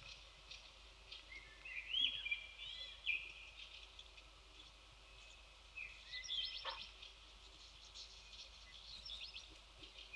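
Small songbird chirps and short gliding whistled calls in a few bursts, about two seconds in and again from about six seconds, over faint steady background noise, with a sharp click near the middle.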